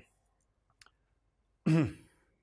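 Near silence with two faint clicks a little under a second in, then near the end a man's short voiced hesitation sound, falling in pitch.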